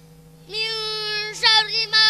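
Children's voices chanting a Quran recitation together in the Qiraati style, through microphones: one long held note starting about half a second in, then shorter wavering syllables.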